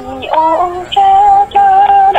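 Music: a song in Thai, a singer holding long notes.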